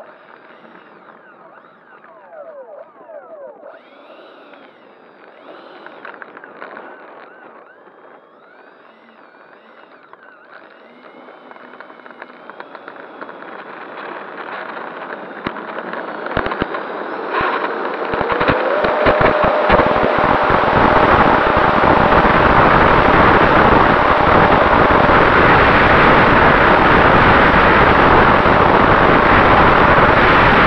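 Twin electric ducted fans of a Freewing 737-800 model jet, heard from an onboard camera. They whine at taxi power, then spool up over several seconds from about twelve seconds in to full throttle for the takeoff run. The second half is a loud, steady rush of fan and air noise with a high whine on top, and low rumbling from strong wind buffeting the microphone.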